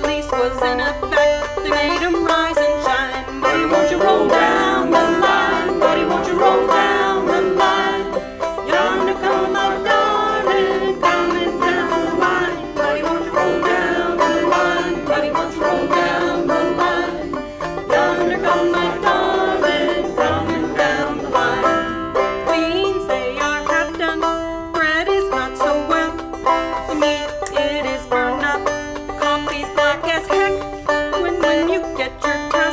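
Banjo picking a folk song with acoustic guitars backing and a woman singing the melody.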